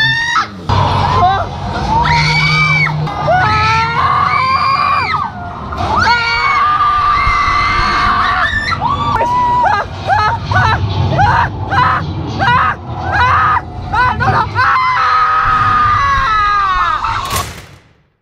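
Riders screaming and yelling again and again inside a drop-tower ride's elevator cab, with a low rumble and the ride's soundtrack underneath; it fades out just before the end.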